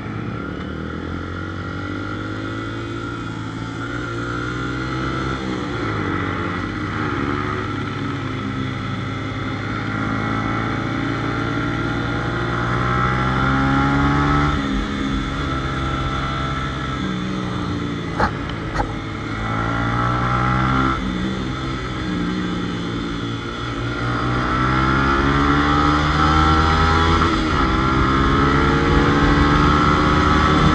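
Motorcycle engine under way, its pitch climbing and then dropping several times as the bike accelerates through the gears, and getting louder toward the end. Two sharp clicks sound a little past halfway.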